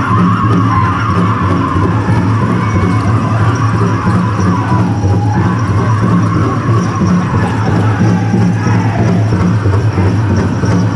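A powwow drum group singing a fancy dance song: high voices in unison over a steadily beaten big drum, running on without a break.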